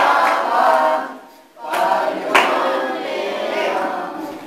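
A group of voices singing a birthday song together, with a short break between phrases about a second and a half in.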